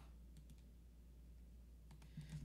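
Near silence with a few faint computer mouse clicks, over a steady low hum.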